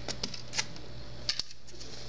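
A few light clicks and taps from small plastic toy parts being handled, two of them close together about halfway through, over a low steady hum.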